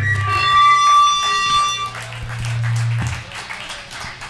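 Electric guitar amp feedback and a low bass note ringing on just after the band stops playing. A high steady feedback tone holds for about two seconds and the low note for about three, then both stop, leaving quieter amp noise.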